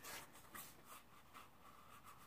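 Near silence, with a few faint rubs of fingers on watercolor sketchbook paper as the book is handled.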